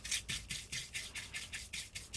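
Small bristle paintbrush scrubbing the plastic top of a paper air filter element, wet with brake cleaner, in quick back-and-forth strokes of about five a second.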